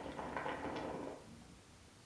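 Water bubbling in the glass base of an Elmas Nargile 632 hookah as smoke is drawn through the hose. The bubbling stops about a second in when the draw ends.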